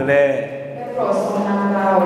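A man's voice praying aloud into a microphone, some syllables drawn out into long held tones.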